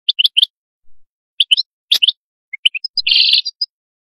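European goldfinch singing: quick twittering chirps in short clusters, then a buzzy trill about three seconds in.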